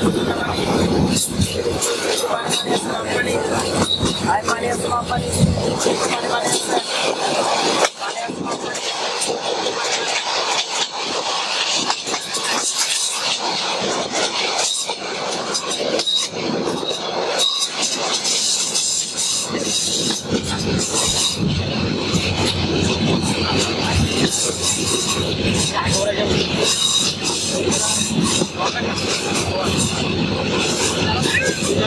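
Passenger train running along the track, heard from inside the carriage at the window: a steady, loud rumble and rush with frequent clicks and rattles of the wheels over the rails.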